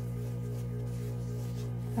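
Vintage 1961 Singer Sew Handy child's electric sewing machine switched on, its small motor giving a steady electric hum with a faint regular pulse.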